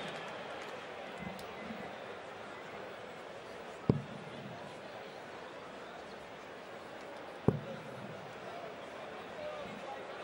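Steel-tip darts thudding into a bristle dartboard: two sharp single hits about three and a half seconds apart, over a steady arena crowd murmur.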